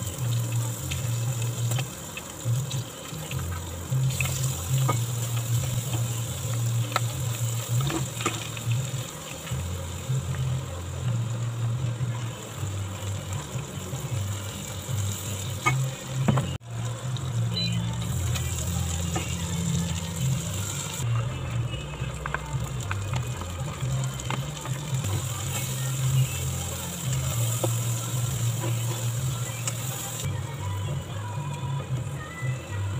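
Chopped garlic sizzling in hot oil in a stainless steel pot, with occasional clicks of a spatula stirring against the pot, under background music.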